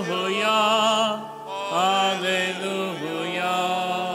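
Sung Gospel acclamation (Alleluia) at Mass: a voice holds long, wavering notes, moving to a new pitch about every second or two.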